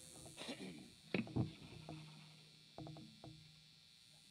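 Faint, sparse stage sounds during a pause between songs: a few short, scattered voice fragments and low instrument notes over quiet room sound.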